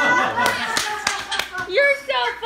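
Hand claps, a quick run of them from about half a second in for about a second, with a young child's voice at the start and again near the end.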